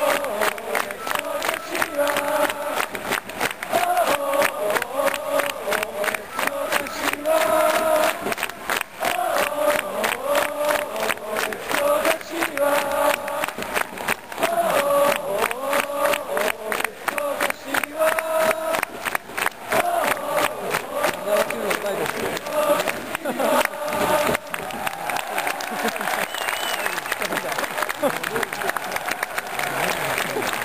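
A large football supporters' crowd singing a chant in unison, with many hands clapping in rhythm.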